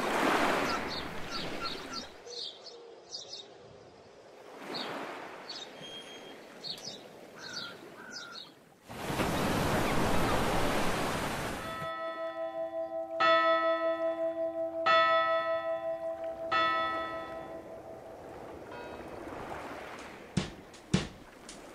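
Sea swells washing in and out with faint high chirps, then a surge of breaking surf about halfway through. After it a large bell tolls slowly, struck about four times, each strike ringing on and fading.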